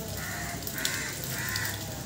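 A crow cawing three times in quick succession, harsh and evenly spaced.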